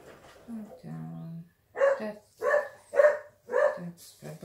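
A dog whines briefly, then barks four times in quick, even succession.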